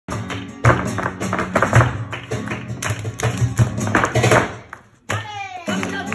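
Live flamenco music: an acoustic guitar strummed in sharp, rhythmic strokes. The playing breaks off briefly about five seconds in, and a sliding voice leads into a held sung note.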